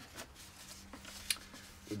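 Paper coffee filter rustling as it is handled, with one sharp crackle a little past the middle.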